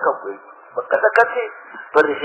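Speech only: a man speaking in a muffled, narrow-band recording, with a sharp click about a second in.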